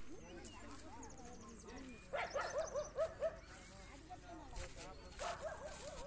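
Faint animal calls in a quick series of short yelps, starting about two seconds in, with another brief group near the end, over faint background voices.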